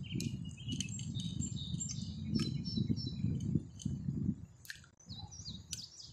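Songbirds chirping and whistling, with a low rumbling noise on the microphone that drops away past the middle and a few sharp clicks.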